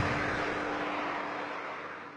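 A rushing noise with a faint steady hum, fading out gradually.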